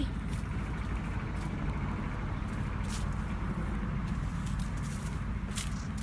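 Dry corn stalks and leaves rustling and crackling, with footsteps, as someone walks through them, over a steady low rumble.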